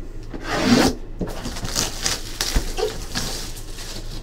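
Cardboard box being handled on a table, its surfaces rubbing and sliding against each other. A louder scraping swish comes about half a second in, followed by lighter rubs and a short knock.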